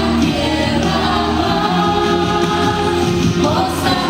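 A woman singing a Spanish-language gospel worship song into a microphone over musical accompaniment, holding long notes.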